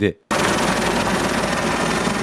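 Helicopter in flight overhead: a dense, rapid rotor chop with engine noise that cuts in suddenly just after the start.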